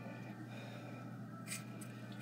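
Quiet room with a steady low hum, and a brief soft scrape about one and a half seconds in as a butter knife cuts into a green bell pepper.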